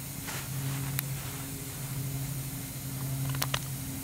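Steady low machinery hum, with one sharp click about a second in and two more near the end.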